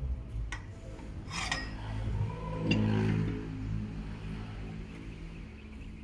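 A few short, separate metallic clinks of hand tools on the wheel bolts of a vibratory soil compactor, over a steady low hum.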